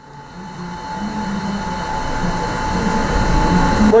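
Victor 6" x 18" surface grinder running, a steady machine hum with a held whining tone, growing louder over the first two seconds.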